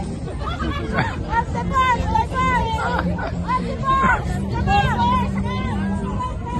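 A group of people talking and calling out over one another, with repeated high-pitched shouts.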